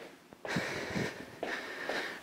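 A woman's heavy breathing from exertion during a cardio workout: two noisy breaths, about a second apart, between spoken cues.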